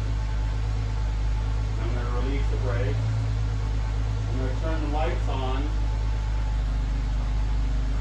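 2010 Chrysler 300's engine idling, a steady low hum.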